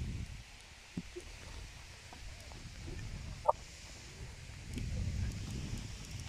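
Wind rumbling on the microphone in gusts, with a sharp tap about a second in and a few faint short bird calls, the clearest about three and a half seconds in.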